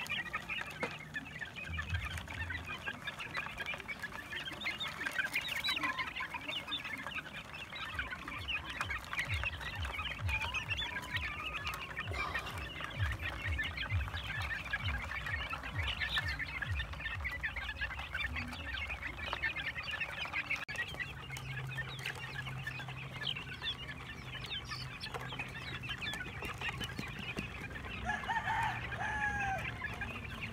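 A flock of young gamefowl chickens feeding, making a dense, continuous chatter of short high peeps and clucks from many birds at once, with a few louder, longer calls near the end.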